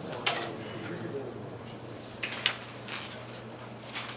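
Sheets of paper being slid and handled on a document camera, with short rustles about a quarter second in and again around two and a half seconds, over a steady low hum.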